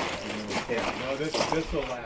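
Men's voices talking quietly and indistinctly.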